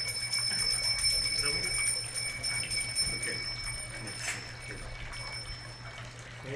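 Faint voices and light bell ringing over a steady low hum, in a lull between kirtan chants.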